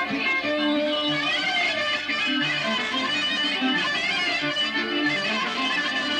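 Live Greek Sarakatsani folk dance music from a small band of clarinet, armonio keyboard and electric guitar, with a wavering, ornamented melody over a steady rhythmic accompaniment.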